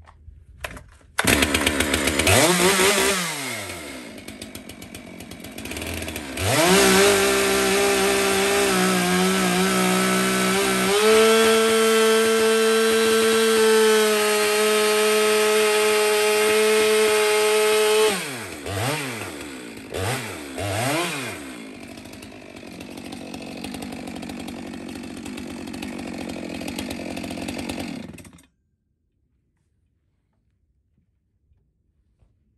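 Stihl MS 462 two-stroke chainsaw running. It comes on suddenly about a second in, revs and drops back, then runs at full throttle for about eleven seconds while cutting deep into a big log. A few throttle blips follow, then it idles and cuts off suddenly near the end.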